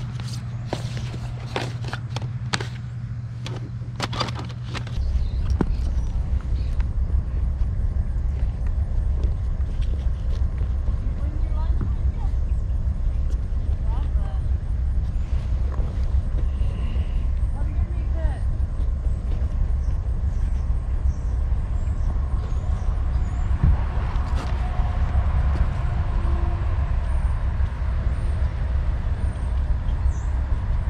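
Plastic video-game cases clicking and knocking as they are flipped through by hand for the first few seconds, then a steady low rumble of wind on the microphone.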